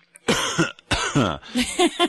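A person coughing a few times in short, rough bursts: the cough of someone who says they have been sick.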